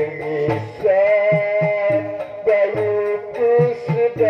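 Shadow-puppet theatre ensemble music: a melody instrument holding long, slightly bending notes over regular low drum strokes and light high ticks.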